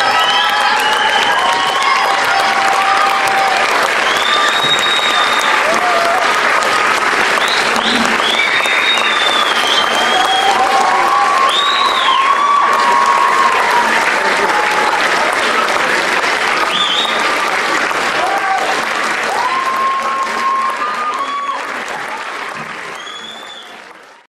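Audience applauding and cheering, with scattered whoops and shouts above the clapping; it fades out near the end.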